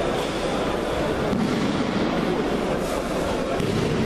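Loud, steady din of a crowded sports hall: overlapping voices and movement, with a few short knocks, such as bodies landing on mats, mixed in.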